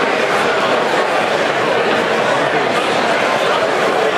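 Steady babble of a festival crowd: many people talking at once, with no single voice standing out.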